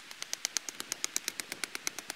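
Hatchet striking the top of a wooden stake to drive it into the ground: a rapid, even run of sharp knocks, about ten a second.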